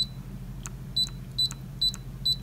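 Brother ScanNCut SDX125 touchscreen beeping as its on-screen arrow keys are tapped with a stylus. There are four short, high beeps: one at the start, then three about half a second apart in the second half.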